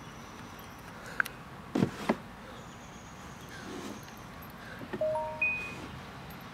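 Hands patting down on a concrete driveway during plank shoulder taps: a few light knocks about two seconds in and again near the end, over a quiet outdoor background, with a brief high chirp near the end.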